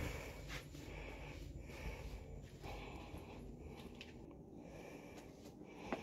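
Faint footsteps, a step about every second, over a low steady rumble.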